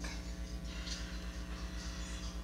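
A low, steady hum with a fast, even throb, and faint steady tones above it.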